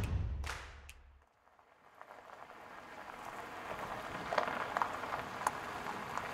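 A whooshing transition effect ends in a low rumble that dies away within the first second. From about two seconds in, a crackling hiss with scattered small clicks builds up and holds, fitting a pickup's tyres rolling over a gravel driveway.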